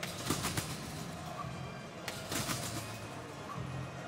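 Competition trampoline bed and springs taking a gymnast's landings: two bounces about two seconds apart, each a brief thump.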